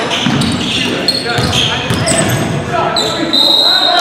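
Live basketball game sound in a large gym: the ball bouncing on the hardwood, sneakers squeaking on the floor, with a longer squeak about three seconds in, and players' voices calling out, all with the hall's echo.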